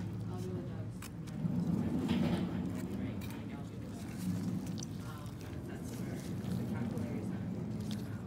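Indistinct, low voice-like murmur with a few faint clicks of handling.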